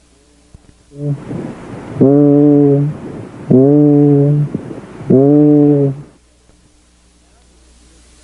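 The letter E voiced three times, heard through a stethoscope over healthy lung: three steady, muffled hums of about a second each, with the upper tones filtered away. This is normal voice transmission with no egophony: the E is not changed to an A.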